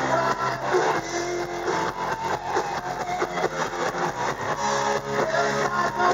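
Live hard rock band playing: electric guitars, bass and a drum kit keeping a steady beat.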